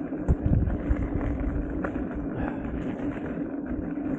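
Electric unicycle riding over a dirt path: a steady motor whine over tyre rumble and wind on the microphone. A couple of low thumps from bumps come about half a second in.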